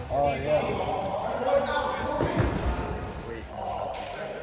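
Players' voices calling out in a large indoor soccer hall, with one dull thud of the ball about two and a half seconds in.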